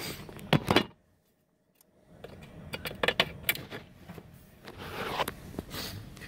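Scattered sharp clicks and rustling handling noise from an Ethernet cable being plugged into a Cisco access point while its mode button is held down. About a second in, the sound drops to a second of total silence, then the clicking and rustling resume.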